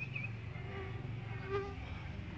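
A steady low hum, with a short buzz about one and a half seconds in.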